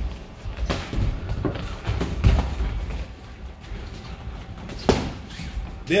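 Boxing sparring: a series of padded thuds from gloved punches landing and feet working on the ring canvas, about six sharp hits at uneven intervals, the loudest about two seconds in and just before the end. Faint music plays underneath.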